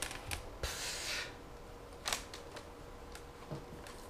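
Clear acrylic quilting rulers handled on a cutting mat: a few sharp clicks and taps, with a short sliding hiss about a second in as a long ruler is pushed across the mat, and another click near two seconds.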